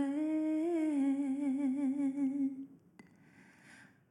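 A female singer holding one long note that rises slightly, then wavers in a steady vibrato and stops about two and a half seconds in. A second or so of near silence follows, broken by a single faint click.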